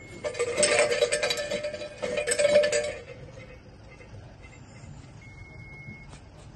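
A Shinto shrine bell (suzu) rattles and jangles as its thick hanging rope is shaken, sounding the call to the deity before praying. The clatter lasts about three seconds and then stops.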